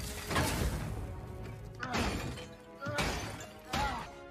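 Action-film soundtrack: orchestral score under about four loud crashing, shattering impacts, the first and loudest right at the start.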